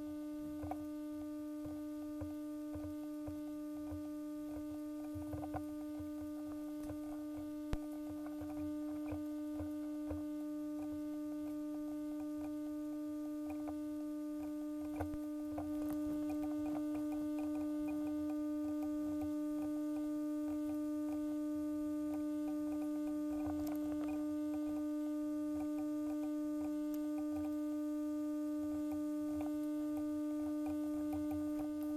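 Steady electrical hum on the recording, one pitched tone with overtones, a little louder from about halfway through. Faint scattered clicks sound over it.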